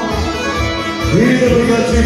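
Live band playing Bosnian kolo folk dance music over a steady bass beat; a melody line slides up and takes over about a second in.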